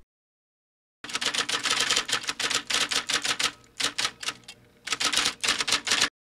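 Typewriter sound effect: a rapid run of key clacks starting about a second in, easing off briefly just past the middle, then resuming, in step with on-screen text being typed out letter by letter.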